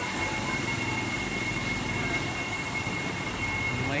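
Steady rumbling mechanical noise with a faint, constant high whine, mixed with water churning in aerated tubs of live fish.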